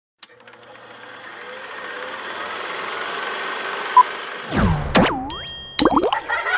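Cartoon-style intro sound effects: a hiss that swells up over about four seconds, a short beep, then springy pitch glides that sweep down and back up several times, with thin high tones near the end.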